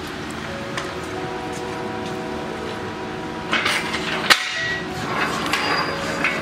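Metal clanks and rattles from an engine hoist and its chain as an engine is rigged to it, with one sharp metallic strike about four seconds in.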